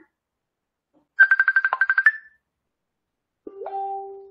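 Incoming-call ringtone: a fast trill of about a dozen high beeps lasting about a second. Near the end comes a click, then a short, steady, lower tone.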